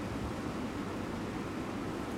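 Steady background hiss with a low hum, and no speech: room tone.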